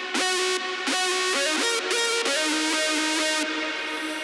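Distorted Sylenth1 synth lead playing a solo melody, its notes sliding up and down into the next with pitch bends for a portamento effect. The line stops about three and a half seconds in.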